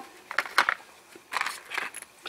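Light knocks and scrapes of wet calcite rocks being set down in a plastic tub, in two short clusters about half a second in and again around a second and a half in.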